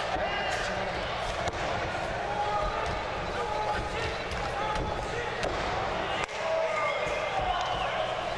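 Wrestlers' bodies and feet hitting the ring canvas in several dull thuds, over the voices of spectators calling out around the ring.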